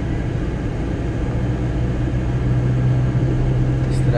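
Car engine and road noise heard from inside the moving car's cabin: a steady low engine hum that grows stronger from about a second and a half in.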